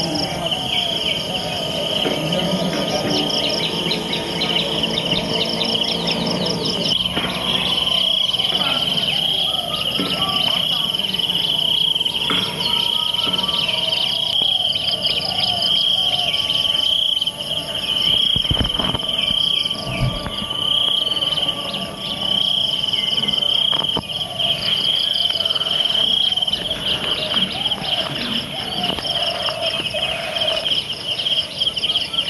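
A steady, high-pitched insect chorus trilling on and on, with birds calling now and then over it.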